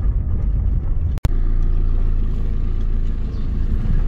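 Car being driven along a road, with a steady low engine and road rumble. The sound drops out completely for an instant about a second in.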